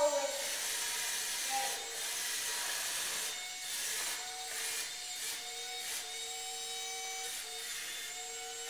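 Wall-climbing remote-control toy car's suction fan and motors whirring steadily as it drives on a wall, with a faint steady whine coming in about halfway through.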